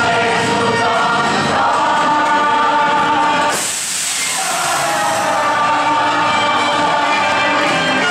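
Stage musical cast singing together as a chorus with accompaniment, holding long notes. About halfway through, a short burst of hiss breaks in and the music dips briefly before the singing carries on.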